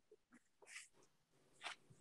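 Near silence in a pause between speakers, broken by two faint, brief sounds: one under a second in and one near the end.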